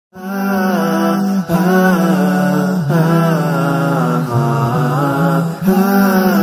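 A voice chanting a melody as the show's intro theme. It holds long notes that bend and waver in pitch, with short breaths between phrases about every one and a half seconds.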